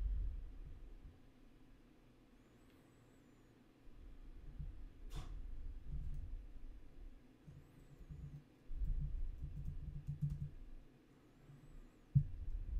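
Faint typing on a computer keyboard, with a sharper click about five seconds in.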